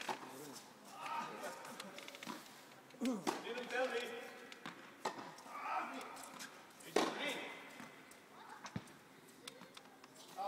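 Tennis balls struck by rackets and bouncing on an indoor court during a rally: several sharp hits roughly two seconds apart, the loudest about seven seconds in, ringing in a large hall, with voices murmuring between them.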